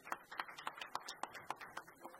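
A small audience applauding, with the separate hand claps of a few people heard distinctly at several claps a second.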